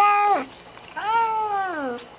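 A black cat's drawn-out meow-like calls: one ends about half a second in, then a second call of about a second, its pitch falling at the end. These are the odd noises she makes when drinking water.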